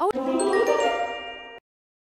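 Cartoon transition sound effect: a quick upward swish into a cluster of bright, ringing chime dings that fade away over about a second and a half.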